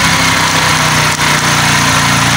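STX 125 motorcycle's single-cylinder engine idling steadily, its charging system freshly converted to full-wave charging and putting out about 14 volts.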